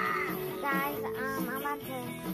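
The show's opening theme song, a sung vocal line with held, wavering notes over guitar-backed pop accompaniment, played through the TV's speakers.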